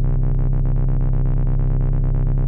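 Synthesizer drone through a Haible Dual Wasp Filter (Random Source Eurorack module), its upper tones fluttering rapidly and evenly, roughly ten times a second, under sine-wave modulation fed through a VCA that is controlled by a Maths module.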